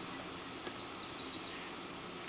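A small songbird twittering, a quick high warbling song in the first second and a half, over a steady hiss, with two short clicks.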